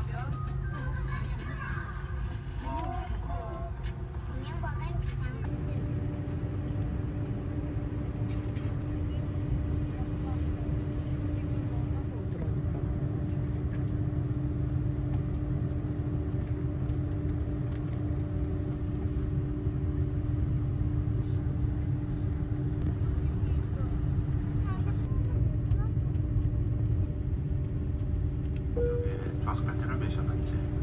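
Airbus A330-300 cabin noise on the ground before takeoff: a steady low rumble, joined a few seconds in by a steady engine hum. A short single chime sounds near the end.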